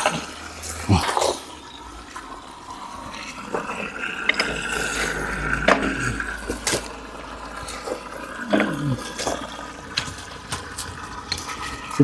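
Water from a garden hose pouring into a 100-litre steel drum packed with quartz crystals, splashing steadily over the stones, with a few sharp clicks among it.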